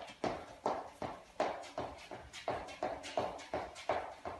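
Footfalls of a person running on the spot in running shoes on a wooden floor: a steady, quick patter of about three thuds a second.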